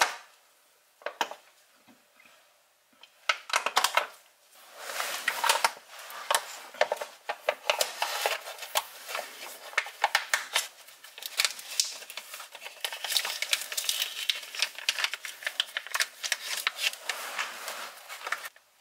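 Flexible plastic gear-oil pouch being squeezed and crinkled by hand while it feeds gear oil into the front differential fill hole. After a few scattered clicks, there is dense, irregular crackling.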